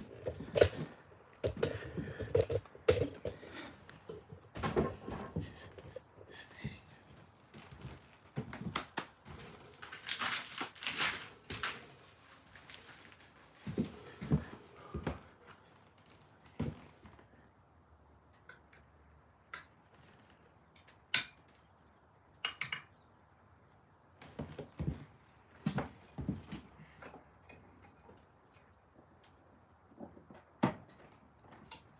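Irregular knocks, clicks and rustles of handling and moving about, busier in the first half and sparse, with long quiet gaps, after about sixteen seconds.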